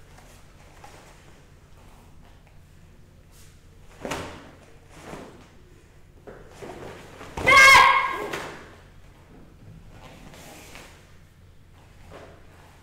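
A loud, sharp shouted kiai, high-pitched and lasting about a second, a little past halfway, as a karate technique is performed; a short thump a third of the way in, with the rest quiet hall room tone.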